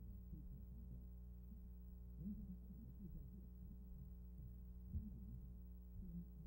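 Steady low electrical hum with faint wavering low tones underneath: the background noise of an old news film's soundtrack.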